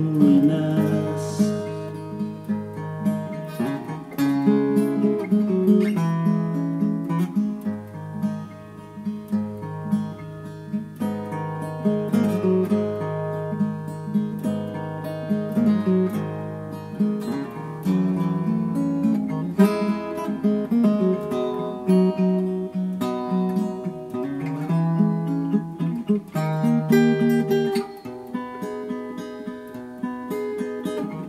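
Yamaha acoustic guitar fingerpicked solo: held bass notes under a steady run of plucked melody notes, played as an instrumental passage without voice.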